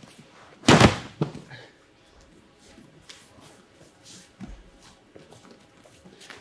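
Two judoka landing together on the tatami at the end of a soto makikomi throw: one heavy thud with a slap on the mat about a second in. Faint shuffling follows as they get up.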